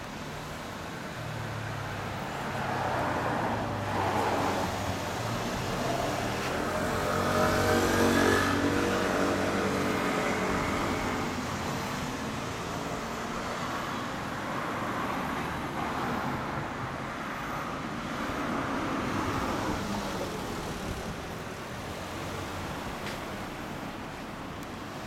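Single-cylinder four-stroke engine of a 2013 Yamaha Cygnus-X SR scooter running at idle through its Realize aftermarket exhaust. A vehicle sound swells and fades, loudest about eight seconds in.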